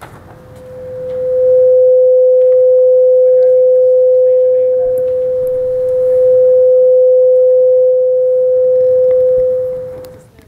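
Feedback ring from the meeting room's sound system: one steady mid-pitched tone that swells in over about a second, holds level and loud for about eight seconds, and fades out near the end.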